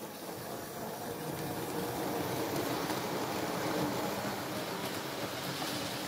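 Model railway train running on its track: a steady rumble with a faint electric-motor whir, growing louder about two seconds in and easing off slightly near the end.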